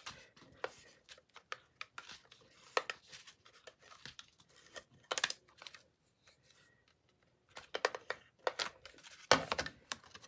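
Tape-runner adhesive being rolled along the back of a cardstock panel, with paper rustling and scattered small crackles and taps as the panel is handled, then a short pause past the middle.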